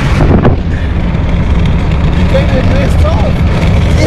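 Wind buffeting and road rumble through the open window of a moving car, heavy and steady, with a faint voice briefly in the middle.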